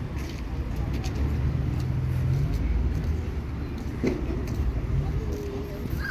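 Low, steady rumble of a car engine running.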